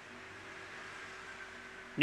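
Faint, steady hiss with a low hum underneath: room tone picked up by the microphone.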